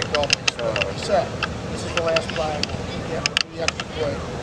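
Distant voices calling out across an outdoor football field, not close enough to make out words, with sharp clicks scattered through, two strong ones a little after three seconds in.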